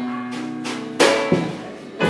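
A live blues band of electric guitar, bass and drums playing an instrumental passage with held guitar notes. About a second in there are two loud drum hits in quick succession.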